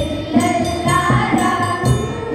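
A group of girls singing a Telugu song together into microphones, with held and gliding notes over a steady percussion beat.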